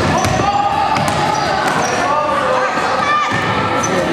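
Basketball game play in a gymnasium: the ball bouncing and sneakers giving short squeaks on the hardwood floor, with players' and onlookers' voices echoing in the hall.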